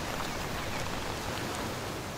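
Heavy downpour: steady, even hiss of rain falling.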